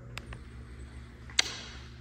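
Quiet room tone with a steady low hum, a couple of faint clicks and one sharper click about one and a half seconds in.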